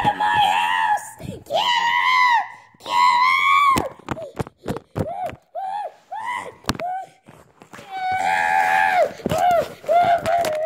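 Children shrieking and screaming in high voices: three long shrieks in the first four seconds, then short yelps mixed with sharp knocks, and another long scream near the end.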